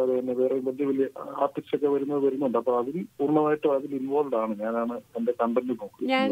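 Speech only: a person talking continuously in a radio interview.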